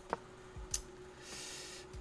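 Quiet room with a faint steady hum: a sharp click just after the start, a second short click under a second in, then a brief breathy hiss like an exhale.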